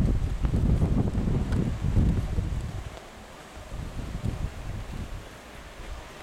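Wind buffeting the microphone in uneven low gusts, strong at first and easing off about three seconds in.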